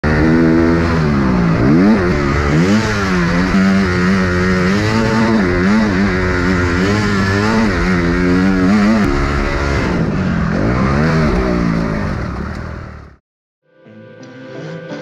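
Honda CRF 250 motocross bike's single-cylinder four-stroke engine, recorded onboard, revving up and dropping back over and over as the rider accelerates and shifts along a dirt track. The engine sound fades out and stops just before the end.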